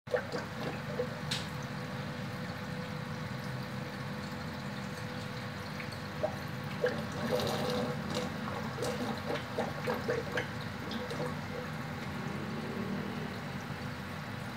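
Aquarium airstone bubbling: a steady stream of air bubbles rising through the tank water, with scattered small pops and clicks over a low steady hum.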